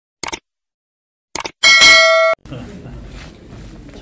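Subscribe-button animation sound effects: two short clicks, then a bright bell ding that rings for under a second and cuts off suddenly. A room's low murmur of people follows.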